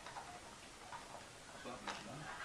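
A few faint sharp clicks and taps, the loudest just before the end, over low room noise.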